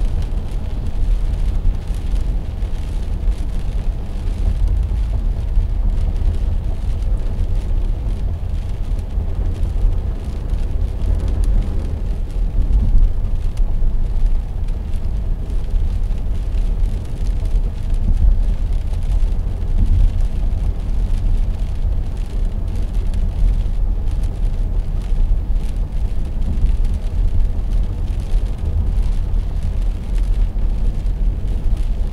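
Steady low rumble of road and engine noise inside a vehicle's cabin cruising at about 80 km/h on a rain-wet highway.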